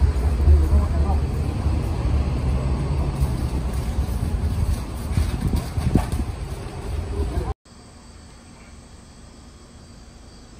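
Street ambience at a shop doorway: a steady low rumble with indistinct voices in the background. It cuts off abruptly about seven and a half seconds in, leaving a much quieter steady background.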